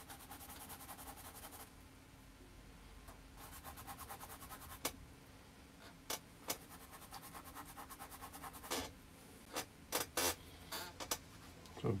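Faint, scratchy strokes of a bristle brush dragged across the canvas, in two quick runs, with a few scattered small clicks and knocks in the second half.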